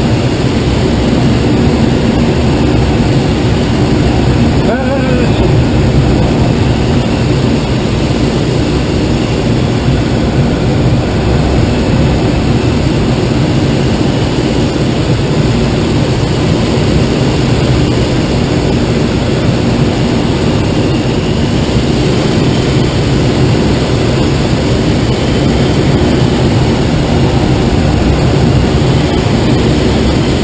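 Steady, loud rush of airflow over a glider's canopy in flight, mixed with the distant drone of the tow plane's propeller engine ahead.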